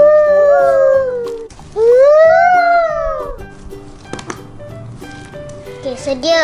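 Two long high-pitched calls, each about a second and a half, that rise and then fall in pitch, over steady background music.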